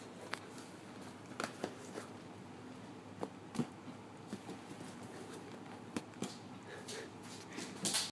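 Irregular light taps and knocks, a dozen or so, from a collie playing with a rubber balloon and bouncing it off her nose, the loudest coming right at the end.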